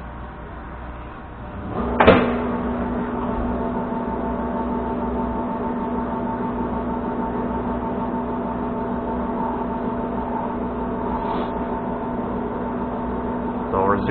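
A Monarch engine lathe starting up with a clunk about two seconds in, then its spindle and geared headstock running steadily at low speed, a steady hum with a few held whining tones.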